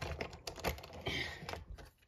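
Wooden toy trains knocking and clicking against wooden track and each other as they are pushed by hand: a run of irregular small clicks that stops just before the end.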